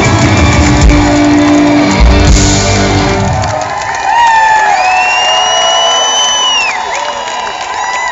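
A live rock band's song ending: guitars, bass and drums hold a final chord that stops about three seconds in. The crowd then cheers, with several long whistles rising and falling above it.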